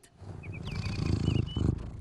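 A large cartoon house cat's low rumbling purr, building over about a second and a half, with a faint wavering high tone above it.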